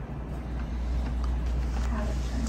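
Steady low hum of the meeting room's background noise, with a few faint clicks.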